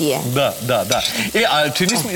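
Chopped zucchini flesh and onion sizzling as they fry in a pan, with a spoon scraping food off a plate into it, under indistinct talking.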